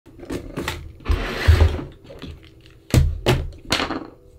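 Hands handling a small hard object: a scraping rustle with a low thump about a second in, then three sharp knocks in quick succession near the end.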